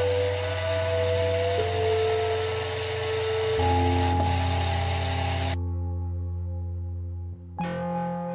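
Sustained background music, held chords that shift in steps, over the whir of the robot's two small DC gear motors as PWM drives them faster. A thin whine rises slowly in pitch over the first couple of seconds. About two-thirds of the way through, the upper range cuts out suddenly.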